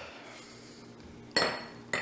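Metal ice cream scoop clinking against a drinking glass, one sharp strike about a second and a half in that leaves a short ring.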